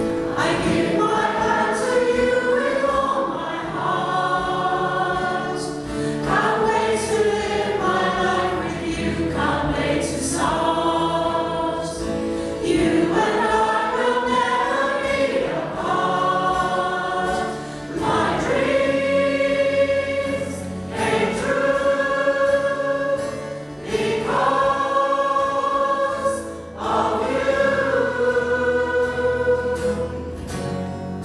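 Mixed choir of men's and women's voices singing a slow pop ballad in long held phrases, with short breaks between lines, to acoustic guitar accompaniment.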